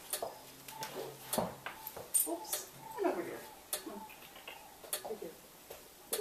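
Metal bit and buckles of a bridle clinking and clicking as a horse is bridled, with a short falling whine about three seconds in.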